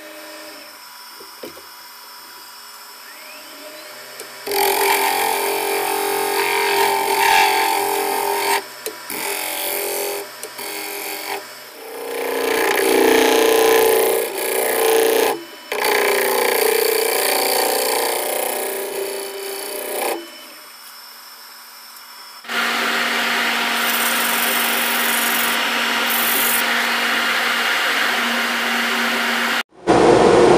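Wood lathe spinning a sugar maple bowl while a gouge cuts it, a rasping shaving noise that comes in spells. Between the spells are quieter stretches of the lathe running on its own.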